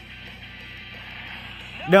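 Cartoon soundtrack playing through a TV speaker, quiet and steady: a faint hiss over a low hum, with a character's voice coming in near the end.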